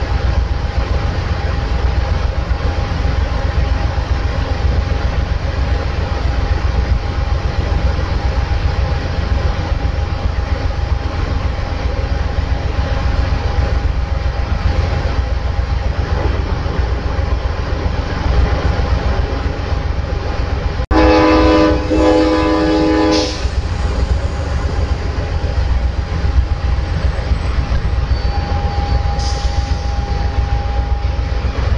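A steady low rumble from the standing Amtrak Southwest Chief. About 21 seconds in, a train horn sounds one loud multi-tone chord blast of a little over two seconds, just before the train starts to pull out.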